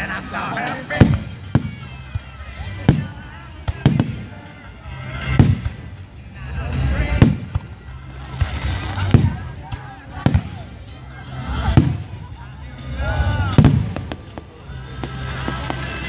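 Aerial firework shells bursting, about ten sharp bangs one every one to two seconds.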